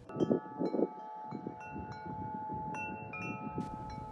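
Tubular wind chimes ringing: notes at several pitches struck one after another, each left to ring on and overlap, over a low rustling noise.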